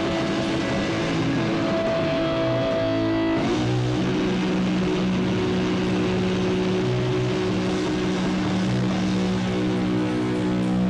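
Live rock band playing loud, with distorted electric guitars holding droning chords over drums; the chord changes about three and a half seconds in.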